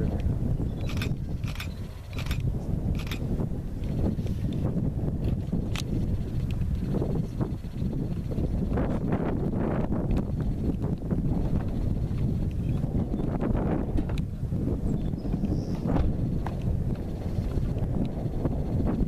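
American bison herd running in a stampede: a steady low rumble of hooves with scattered sharp clatters, most of them in the first few seconds.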